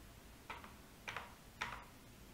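Three faint computer keyboard keystrokes, a little over half a second apart.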